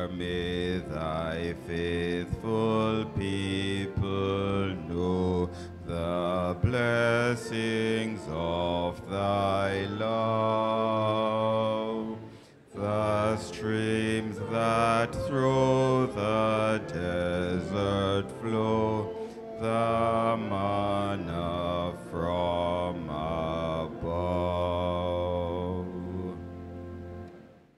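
A church hymn sung in slow phrases of held notes, with a short break between lines about twelve seconds in.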